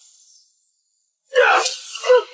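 A high hiss fades away, there is a moment of near silence, then a sudden loud rushing burst comes about a second and a half in, typical of a sound effect or a sharp breathy effort in an animated fight.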